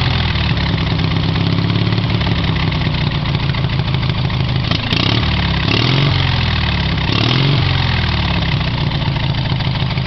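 Garden tractor engine running through Harley motorcycle exhaust pipes, mostly idling, blipped up in two short revs about six and seven and a half seconds in. A single sharp click comes just before the first rev.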